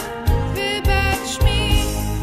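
A girl's solo voice singing over a backing track with a steady beat.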